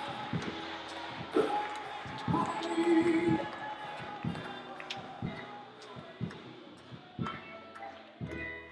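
Voices calling out in prayer, with scattered knocks and thuds among them over a few held tones.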